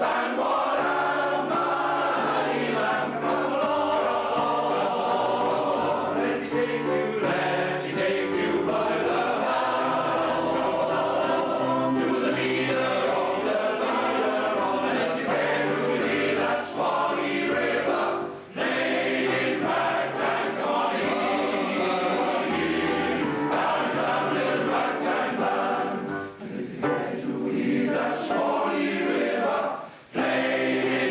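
Welsh male voice choir singing in full harmony with piano accompaniment, the voices held in long sustained phrases with short breaks between them about two-thirds of the way through and near the end.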